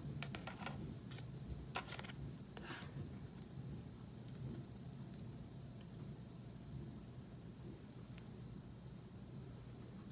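A few faint scrapes and taps in the first three seconds as a sandwich is cut and lifted on a clear plastic knife, then only a steady low hum.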